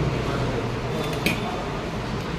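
Steady low room hum, with one short sharp click about a second and a quarter in.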